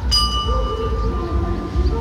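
A bell struck once near the start, ringing with several high, clear tones that fade over about two seconds. At a dressage test this is the judge's bell signalling the rider to begin.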